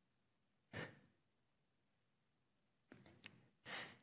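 Near silence broken by a man's breaths: a short breath about a second in, a few faint clicks around three seconds, and another breath just before the end.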